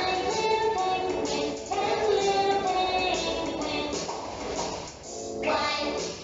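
A children's song: music with sung vocals.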